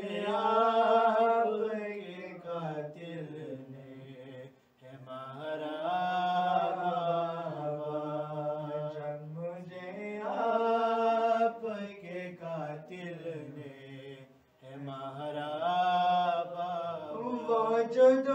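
A man's solo, unaccompanied voice chanting an Urdu marsiya (mourning elegy) in long, slowly rising and falling held phrases, with two brief breaks for breath.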